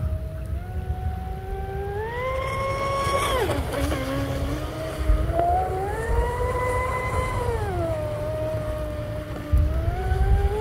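Deltaforce 35 electric RC speedboat's brushless motor whining as it runs on the water, its pitch rising and falling with the throttle: it climbs, drops sharply about three and a half seconds in, climbs again, falls back around eight seconds, and starts rising once more near the end.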